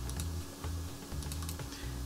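Faint computer mouse and keyboard clicks, a few scattered taps, over quiet background music with a slow-changing bass line.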